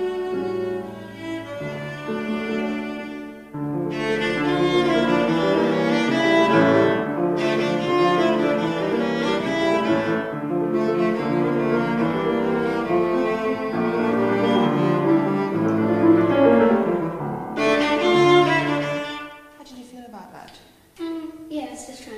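Cello playing a melody with piano accompaniment, the sound growing fuller about three and a half seconds in; the music stops about nineteen seconds in.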